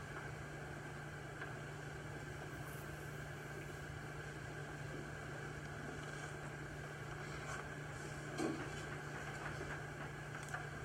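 Quiet room tone: a steady low hum with an even fan-like hiss, and one small brief sound about eight and a half seconds in.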